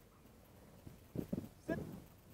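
A dog's short vocal sounds: two brief low woofs a little over a second in, then a short higher yelp that rises in pitch near the end.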